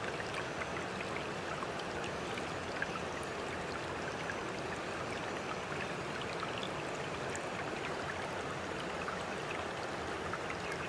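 Steady running water, trickling without a break, with a few faint small ticks.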